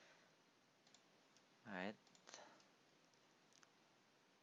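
Faint computer mouse clicks, a few scattered single clicks, in near-silent room tone, with a brief hum of a voice just under two seconds in.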